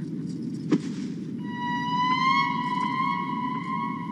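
Film background score: a single high note, held steadily with a slight upward lift, enters about a second and a half in over a low, even hum.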